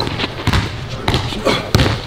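Basketball dribbled on a hardwood gym floor: a run of sharp bounces, about two a second.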